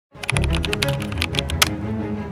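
Computer keyboard typing: a quick, uneven run of a dozen or more keystrokes that stops about one and a half seconds in, over background music with low held notes.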